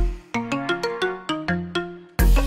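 Electronic club music from a DJ set. One deep kick hits at the start, then the kick drops out and leaves short, choppy synth stabs and a held low note. It is a brief breakdown in the beat.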